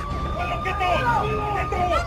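Police car siren wailing: one long tone that has just risen, holds and slowly sinks, over several people shouting.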